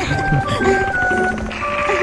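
Background music: a simple melody of steady held notes, changing pitch every half second or so.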